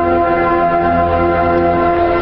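Brass ensemble of trombones and tubas playing slow, sustained chords.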